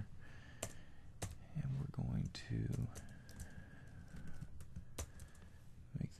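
Light, scattered keystrokes on a computer keyboard as a spreadsheet formula is typed, single clicks roughly every half second to second.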